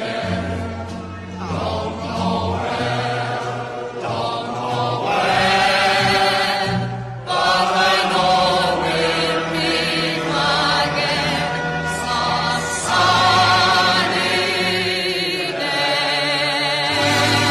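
Classical singing with strong vibrato over instrumental accompaniment, with a brief break about seven seconds in.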